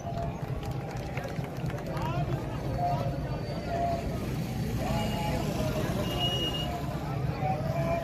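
Outdoor street ambience: people talking in the background over a steady low rumble, with a brief high tone about six seconds in.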